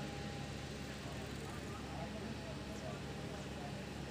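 Steady outdoor background noise with a low hum and faint, indistinct voices.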